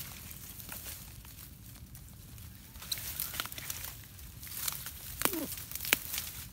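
Dry grass, reeds and net rustling and crackling as a snare net is pulled up out of overgrown vegetation. The sharp crackles come thicker and louder in the second half.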